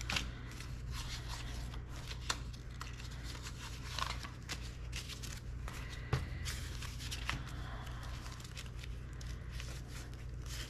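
Paper banknotes rustling as hands sort, thumb through and lay down bills, with scattered short snaps of paper, over a steady low hum.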